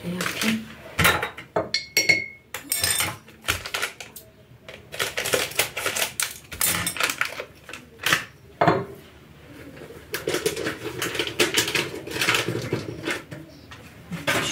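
Porcelain coffee cups, saucers and teaspoons clinking and clattering on a kitchen counter while Turkish coffee is being set up, with one short ringing clink about two seconds in.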